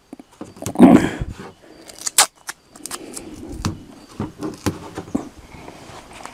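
Adhesive tape pulled and torn from a roll and pressed onto a sheet of paper, with the paper crinkling. The result is irregular ripping and rustling, loudest about a second in, with a few sharp clicks.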